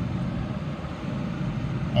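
Steady cabin noise of a 2011 Ford Focus SE at idle: its 2.0-litre four-cylinder engine running with the air-conditioning blower on, an even hum and hiss.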